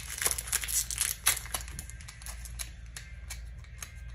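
Foil Pokémon booster-pack wrapper crinkling and crackling as it is handled, busiest in the first second and a half and then in sparser crackles.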